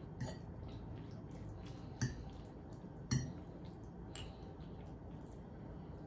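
A fork twirling spaghetti on a plate: faint soft squishing with a few light clicks of the fork against the plate, the sharpest about two and three seconds in.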